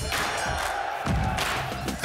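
Loud, energetic TV sports-programme theme music with heavy low hits, mixed with the sound of a cheering crowd.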